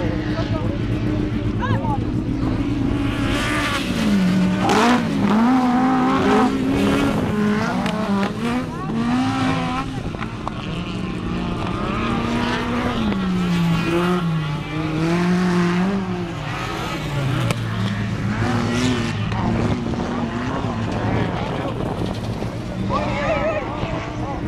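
Autocross special race car's engine revving hard on a dirt track, its pitch rising and dropping again and again as it accelerates, lifts and shifts through the corners.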